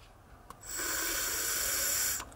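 A draw on a noisy rebuildable vape atomizer: air hissing through its airflow holes with a faint whistle. It starts about half a second in and lasts about a second and a half. The noise comes from air swirling as it enters the atomizer.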